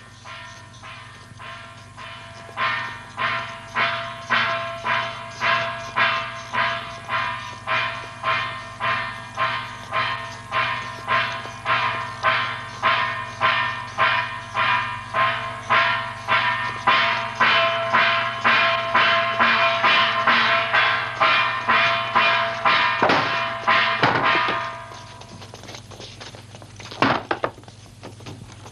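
Metal percussion struck steadily about twice a second, each stroke ringing, the beat growing louder and then stopping a few seconds before the end; two sharp hits follow near the end.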